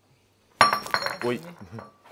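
A cobra strikes the glass front of its enclosure: a sudden knock about half a second in, with the pane ringing for about a second after.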